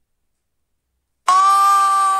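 Silence, then, a little over a second in, a loud, steady single-pitched tone with strong overtones starts suddenly and holds without wavering.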